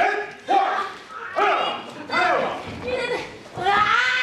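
High-pitched voices shouting in short, separate calls, about one a second, each call rising and falling in pitch.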